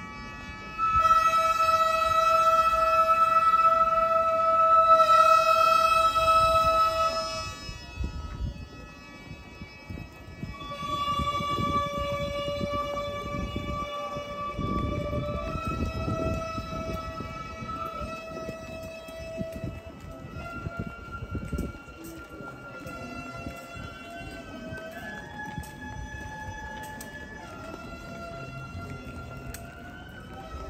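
A single wind instrument playing slow traditional Japanese music: long held notes, each several seconds, stepping and sliding between pitches, over low street noise.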